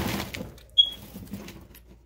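A plastic hideout shifted over pellet and hay bedding in a guinea pig cage: rustling that fades away, with one sharp tap about a second in.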